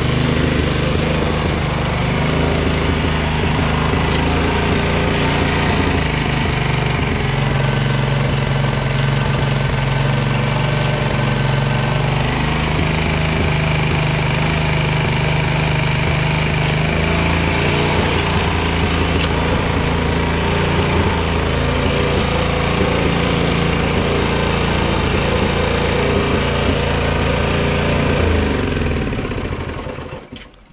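Hyundai HTY 140 petrol rotavator engine running steadily at an even speed, "running sweet as a nut" with its governor spring refitted so it no longer races at full throttle. Near the end the engine note drops and it runs down.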